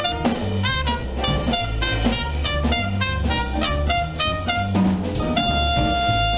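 Live small-group jazz: a trumpet solo of quick note runs over piano, upright bass and drums, settling into a long held note near the end.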